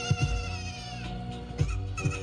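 Song played loudly over a sound system: a steady drum beat under held notes, with a high wavering note that slides down in pitch in the first second.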